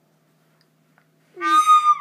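A recorder blown by a baby: one steady, high whistling note, under a second long, sounding near the end.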